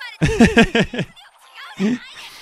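A man chuckling: a quick run of about five short laughs in the first second, then a single short laugh near the end.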